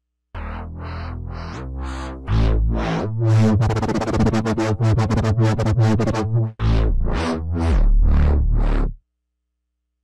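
Wobble bass patch 'Wobble 2 Unisono' from the PluginGuru Omniverse library for the Omnisphere software synthesizer, played on a keyboard. It is a heavy, deep synth bass whose tone pulses in a rhythmic wobble, with a very fast flutter around the middle, and it cuts off suddenly about nine seconds in.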